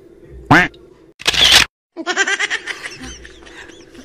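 A group of people's voices: a short loud exclamation, a brief sharp burst of noise about a second later, then several people chattering and laughing together.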